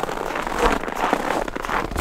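Footsteps crunching on packed snow: an irregular run of small crackles.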